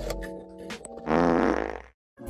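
Background music, then about a second in a loud fart-like rasp lasting just under a second.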